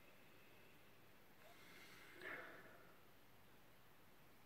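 Near silence, with one faint, short breathy mouth sound about two seconds in from a man sipping whisky from a tasting glass.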